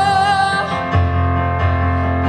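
A young woman singing a long held note over an instrumental accompaniment; the accompaniment's low chord changes about a second in.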